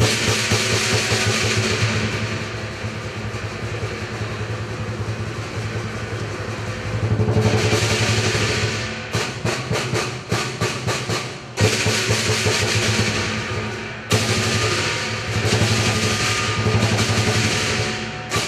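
Lion dance percussion: a big Chinese drum beating with clashing cymbals and a gong, loud and dense. About halfway in it breaks into a run of separate, accented strokes before building up again, and it stops abruptly at the end.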